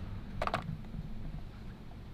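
A brief, faint double click of the plastic blower and battery being handled on a digital scale, over a low, steady background rumble.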